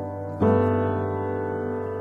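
Background piano music: held chords, a new chord struck just under half a second in and left to ring and fade.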